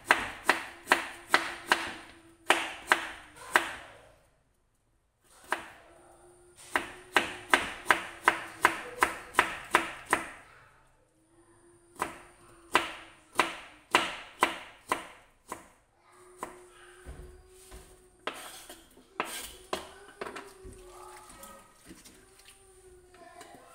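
Kitchen knife slicing fresh bamboo shoot into thin strips on a plastic cutting board: quick, even strokes about three a second, in runs with short pauses between. The last few seconds hold quieter, irregular handling sounds.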